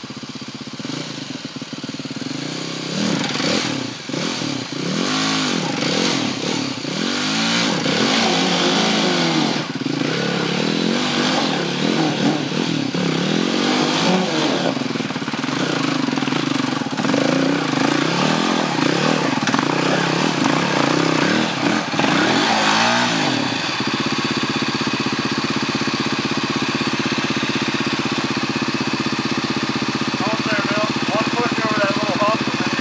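BMW G450X dirt bike's single-cylinder engine revving up and down over and over as the bike climbs a rutted gully. About three-quarters of the way through it settles to a steady, lower run.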